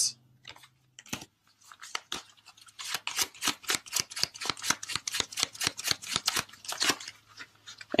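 A tarot deck shuffled by hand: a few scattered card clicks, then from about three seconds in a fast run of card flicks, roughly eight a second, stopping near the end.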